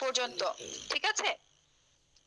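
A person's voice speaking for a little over a second, then a faint, steady, high-pitched hiss.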